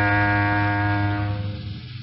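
Closing music: one long, low held note with a rich, steady tone that fades away near the end.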